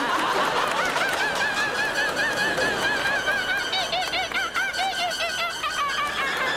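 A man's uncontrollable, high-pitched laughter, held on and on in quick wavering pulses, with a studio audience laughing along.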